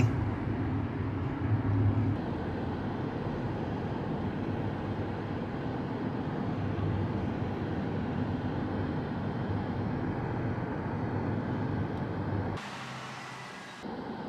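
Steady road noise heard from inside a moving car: a low engine hum under tyre and wind noise. About a second before the end it cuts suddenly to a quieter, hissier background with the low hum gone.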